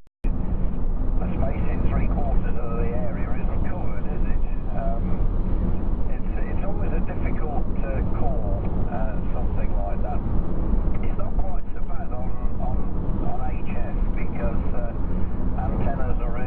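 Steady low rumble of tyre and engine noise inside a car cruising at motorway speed, with indistinct voices talking over it.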